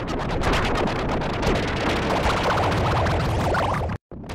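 Harsh, heavily distorted and layered audio of a TV station logo jingle, mangled by stacked video-editing effects into a dense, noisy din with rapid stuttering crackle. It cuts off abruptly at the end.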